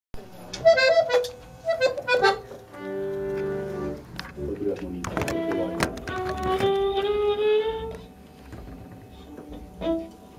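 Accordion playing a few short notes, then held chords with long sustained tones, with a few sharp knocks in between.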